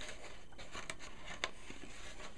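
Ribbon being threaded through a punched hole in a cardstock box: faint rustling of paper and ribbon, with a couple of small sharp clicks.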